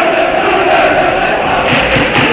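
A mass of football supporters chanting together in the stands: a loud, steady chant from many voices holding one note.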